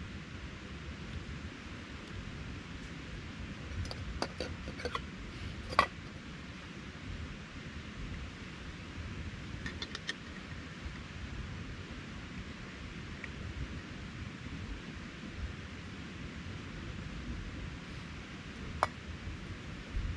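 A few light clicks and clinks of a Primus canister backpacking stove being unpacked and set up, the sharpest about six seconds in, over a steady background hiss.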